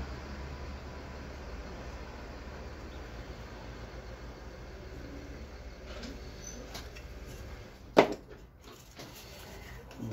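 A single sharp knock about eight seconds in as a carved coconut shell is handled, over a steady low hum and faint handling noise.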